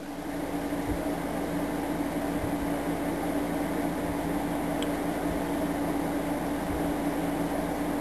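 Steady mechanical hum with a constant low tone, like a fan or small motor running.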